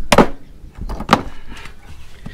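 Hammer and scraper striking and chipping old dried tar off copper gutter flashing: two sharp strikes about a second apart, with lighter knocks between.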